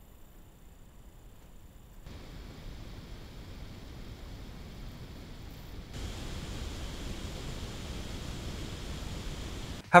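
Cooling-fan noise of the dual-fan AOOSTAR GEM12 mini PC, recorded right at its exhaust vent: a steady, faint airy hiss at idle. It steps up about two seconds in, then grows louder again about six seconds in, when the machine runs under load in performance mode.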